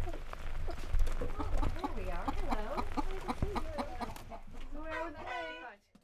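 Domestic chickens clucking in a coop, several hens and roosters calling one after another over a low rumble.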